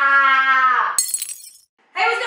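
A woman holds a long exclaimed vowel on one steady pitch, breaking off just before a second in. Then comes a brief, bright, high-pitched burst that sounds like glass shattering or a chime.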